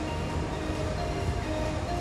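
Steady event-hall din, a continuous mix of crowd and machine noise with a low rumble, and faint background music.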